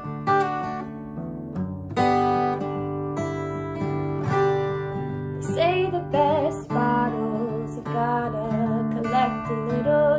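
Acoustic guitar strummed in a gentle folk song, a passage between sung lines. About five and a half seconds in, a woman's singing voice joins the guitar.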